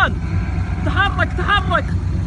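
Three short wordless calls from a person's voice, each bending and falling in pitch, over a steady low engine rumble typical of an idling pickup truck.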